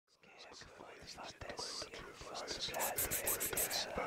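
Faint whispering voices that grow louder over the few seconds, in short breathy bursts.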